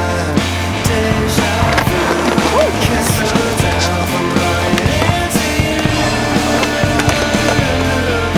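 Grunge-style rock music soundtrack, with a skateboard's wheels rolling on a concrete sidewalk beneath it.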